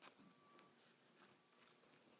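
Near silence: room tone, with a faint click at the start and faint rustles as foliage stems are handled.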